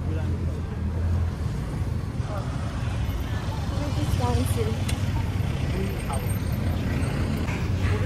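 Road traffic on a city street: a steady low rumble of passing cars, with faint voices of people walking nearby.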